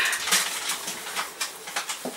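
Hand wiping and handling a PVC window sash during window washing: an irregular run of light taps and rubbing on the plastic frame and glass.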